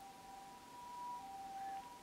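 Two faint, steady high tones, one slightly lower than the other, fading in and out over quiet room hiss.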